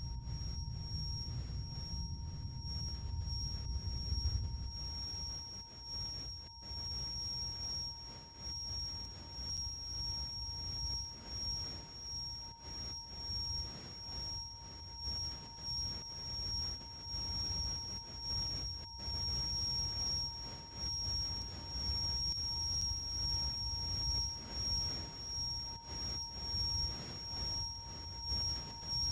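Sustained electronic drone: two steady tones, one mid-pitched and one high, over a low rumble that swells and fades about once a second.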